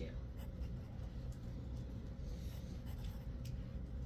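Dry-erase marker writing on a whiteboard: a run of short, faint scratchy strokes over a low steady room hum.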